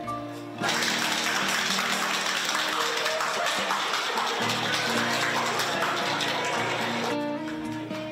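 A crowd applauding with voices mixed in, starting abruptly just under a second in and dying away near the end, over background guitar music.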